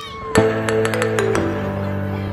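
Background music starting about a third of a second in: held chords with light ticking percussion, the chord changing about halfway through.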